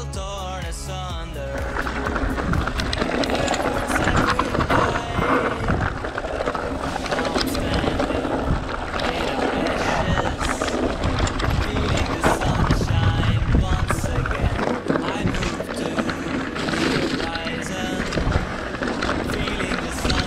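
Mountain bike rolling fast down a rocky, loose-gravel singletrack: tyres crunching over stones and the bike rattling with many short knocks over the bumps, under background music.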